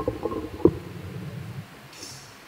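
Three low, short thumps in the first second, then a faint steady background.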